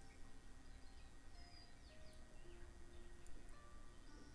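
Very faint, soft background music of long held notes that change pitch every second or so, barely above the room hum.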